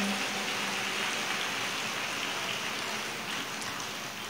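A large crowd clapping, an even patter of many hands, slowly dying down.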